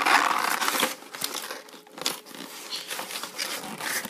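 Packaging crinkling and rustling as a cardboard toy box is handled and opened. The rustle is loudest in the first second, then breaks into scattered softer crinkles and light taps.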